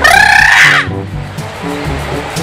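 A man's long, loud shout in about the first second, its pitch rising and then falling, over background music with a repeating melody.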